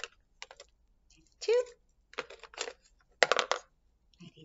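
Wooden craft sticks clicking and clattering against one another as they are drawn one at a time from a bundle held in the hand, in several short bursts, the loudest near the end.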